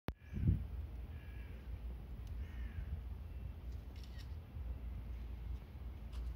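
A crow cawing twice, harsh calls about a second apart, over a steady low rumble. A low thump comes right at the start and is the loudest sound.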